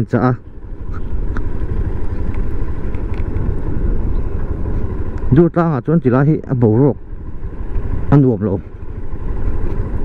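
Motorcycle riding along with its engine running, under a steady low rumble of wind on the microphone; a voice speaks twice in the second half.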